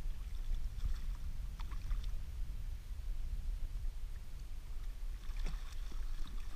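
Water splashing as a hooked walleye thrashes at the surface, a few short splashes around two seconds in and again near the end, over a steady low rumble.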